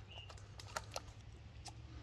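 Quiet handling sounds: a few faint, sharp clicks as pliers work at the hook in a sturgeon's mouth, over a low steady rumble.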